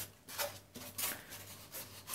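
Faint rubbing and scraping of hands handling a styrofoam model boat hull and its keel, in a few soft, short bursts.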